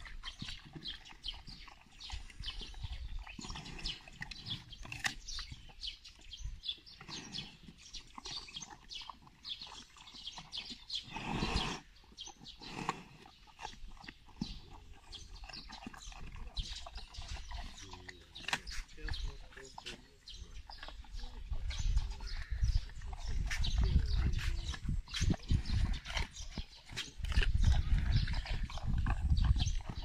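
Brown bear eating apples, many sharp crunches as it bites and chews the fruit. Heavier low rumbling noise joins in during the last third.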